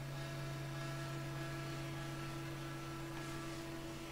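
Steady electrical mains hum from an electric guitar rig left idle, with a few faint higher tones fading out about three seconds in.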